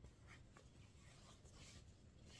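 Near silence, with a few faint, brief rustles of cloth being handled.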